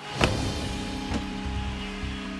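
Sledgehammer blows on a cinder block wall: a sharp strike just after the start and a lighter one about a second later, the block chipping away around a pre-cut opening. Background music plays underneath.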